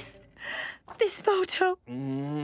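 A sharp gasp, then a few short wordless vocal noises from a cartoon character reacting in shock.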